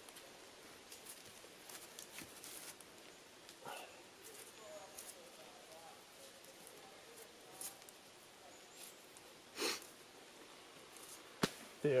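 Quiet handling of dead branches: faint scrapes and taps of wood as the forked sticks and ridge pole of a tripod frame are shifted. There is a louder scrape just before ten seconds in, and a sharp tap about a second later.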